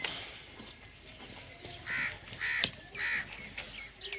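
A bird giving three short, harsh calls about half a second apart in the second half, followed by a few faint chirps.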